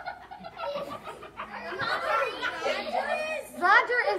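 Indistinct voices talking and laughing, louder in the second half.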